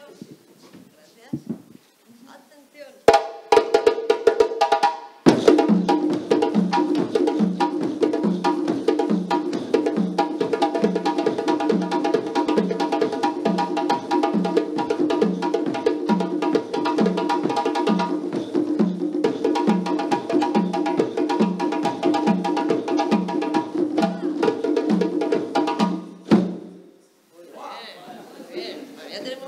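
West African drumming: a djembe played with the hands over three dunun bass drums struck with sticks. A short burst of strokes about three seconds in is followed by a steady, driving rhythm with regular deep bass hits, which stops abruptly near the end.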